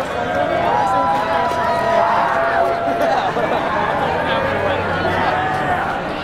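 Crowd of celebrating people on a street, many voices shouting and cheering at once, with several long held shouts overlapping.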